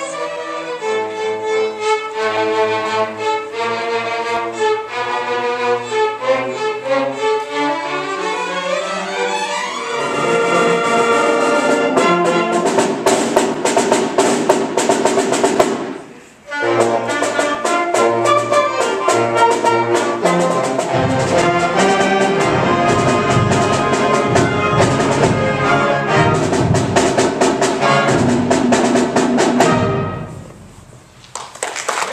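A student string orchestra of violins and cellos playing, then a school concert band of clarinets, flutes, saxophones and brass, with low percussion joining in the later part. The music breaks off briefly about halfway and stops abruptly at the end, as separate clips are joined.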